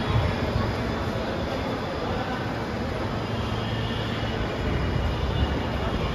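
Ahmedabad Metro train running with a steady low rumble and a faint hiss.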